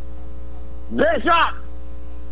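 Steady low electrical mains hum, loud enough to fill the pause between words, with a single short spoken word about a second in.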